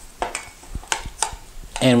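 Metal utensil clinking against a stainless steel mixing bowl a few times, sharp taps that ring briefly, as seasoning is worked into couscous salad.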